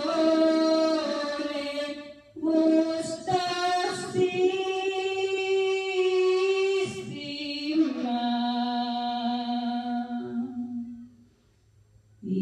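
A woman singing a Spanish hymn of praise unaccompanied, in long held notes, with a short breath about two seconds in and the phrase dying away near the end.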